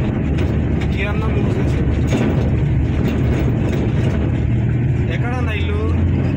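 Steady low rumble of engine and road noise inside a moving passenger van's cabin, with voices briefly heard about a second in and again near the end.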